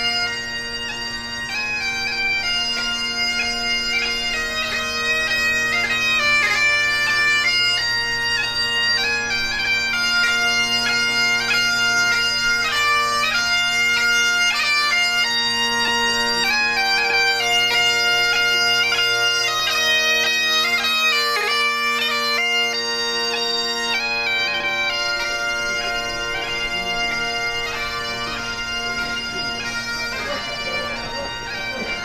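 Great Highland bagpipes played by a single piper: steady drones under a chanter melody, growing louder over the first few seconds as the piper comes closer.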